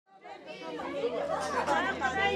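A group of women talking over one another, fading in from silence and growing louder.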